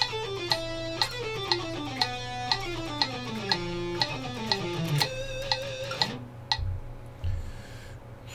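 Electric guitar playing a fast descending scale sequence in sixteenth notes at 120 bpm, over a metronome clicking twice a second. The run ends about six seconds in on a held note with vibrato, followed by two low thumps.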